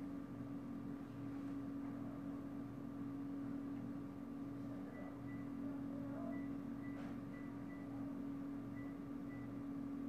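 Quiet room tone: a steady low hum, with faint short high-pitched beeps that come in short runs from about halfway through.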